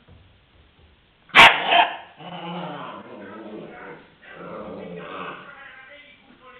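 A puppy barking and growling in play: one sharp, loud bark about a second and a half in, then two longer stretches of lower growling and yapping.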